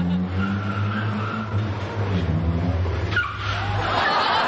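A Mini's small four-cylinder engine running hard while its tyres squeal as it swings through tight turns; a sharp squeal falls in pitch just after three seconds. The engine sound cuts off suddenly at the end.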